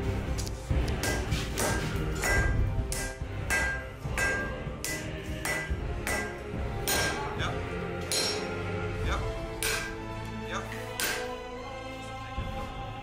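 Hand hammer blows on red-hot steel held on an anvil, about two strikes a second, each with a short metallic ring, stopping about a second before the end. Background music plays throughout.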